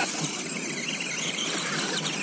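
Steady whine and hiss of a scale RC rock crawler's electric motor and geartrain working during a timed run up the hill.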